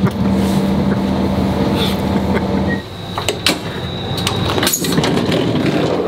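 Passenger train cabin noise: a steady running hum with a low drone that drops away about three seconds in, followed by a few sharp clicks and knocks.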